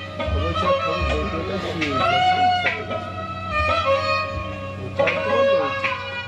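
Kashmiri Sufiyana song: a man singing with string instrument accompaniment, with a few deep low thuds under the melody.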